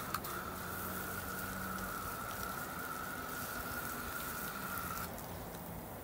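Garden hose spray nozzle spraying water over a fishing rod and reel, rinsing soap off: a steady hiss of spray with a thin steady whine alongside, both easing off about five seconds in.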